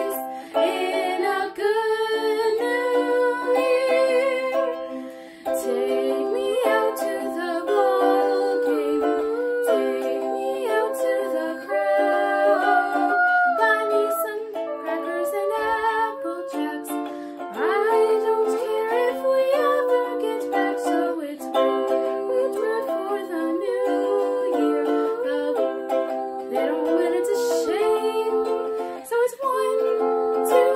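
A girl singing a song with instrumental accompaniment, her voice carrying a melody over steady lower notes, with a brief dip about five seconds in.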